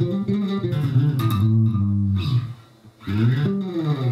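Four-string electric bass (Sonic) played fingerstyle in a groove, with notes slid from fret to fret along the string. About three seconds in, a note slides up and back down.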